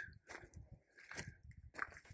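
Faint footsteps crunching on gravel, a few irregular steps.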